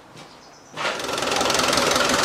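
Land Rover 300Tdi diesel engine idling with a rapid, even clatter. It starts abruptly about three-quarters of a second in, after faint room tone.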